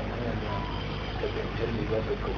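Muffled voice talking over a steady low hum.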